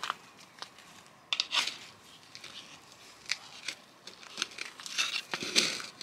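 Scattered crackling and rustling with a few sharp light clicks, as hands work soil, fertilizer and dry leaves around a potted succulent.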